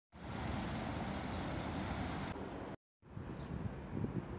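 Steady road traffic noise of cars on a city street. It drops out to silence for a moment about three seconds in, then carries on more quietly.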